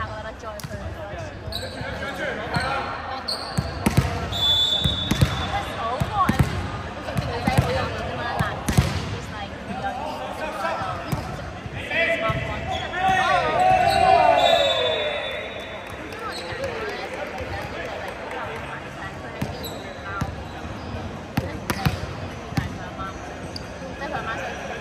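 Volleyball rally: repeated sharp slaps of hands striking the ball on serves, passes and attacks, with players shouting calls to each other. The shouting is loudest about halfway through.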